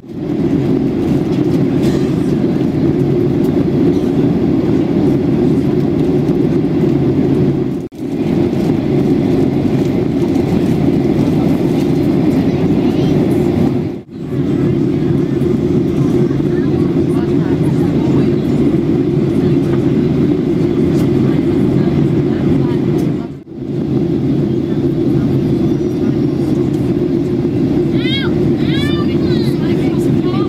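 Cabin noise of a Boeing 737-800 in cruise: a steady, loud rumble and rush of engine and airflow noise from the CFM56-7B turbofans and the air over the fuselage, heard inside the cabin near the wing. It breaks off briefly three times.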